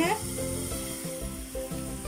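Eggless gram-flour omelette batter sizzling as it is poured into a hot, lightly oiled nonstick frying pan, a steady hiss.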